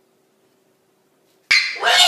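Near silence with a faint steady hum, then about one and a half seconds in a sudden loud, high-pitched cry breaks in.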